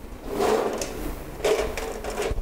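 Whiteboard markers being rummaged for and scraped along the board's tray, in two scraping, rattling bursts about a second apart.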